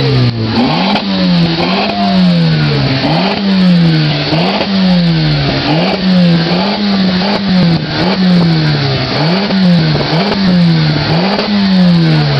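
A tuned car's engine revved over and over, about once a second: each blip climbs quickly and falls away, steadily repeated.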